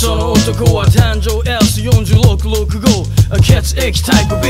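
Hip hop track: a rapper delivering a fast verse over a steady drum beat and a deep, sustained bass.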